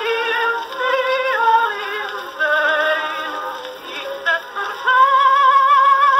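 Edison Blue Amberol cylinder played on a 1914 Edison Amberola DX phonograph: a 1918 acoustic recording of a woman singing with a wide vibrato, the sound thin and without treble or bass. About five seconds in she holds a long high note.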